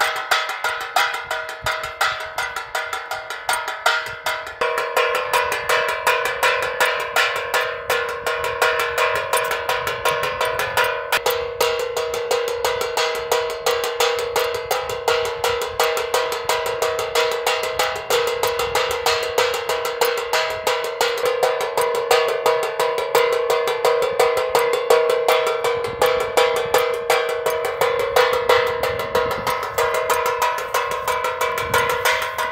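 Wind-turned bird scarer: a propeller spins a metal strip whose wire-tied bolts strike an upturned metal pan over and over, giving a rapid, unbroken metallic clanging with a bell-like ring. The clanging and ring grow louder about four to five seconds in.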